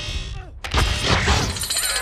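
A sudden crash about two-thirds of a second in, followed by shattering and crackling debris, as part of a film's action sound effects.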